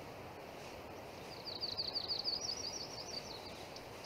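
A bird singing a fast run of high chirps over a steady outdoor background hiss, starting about a second in and fading near the end.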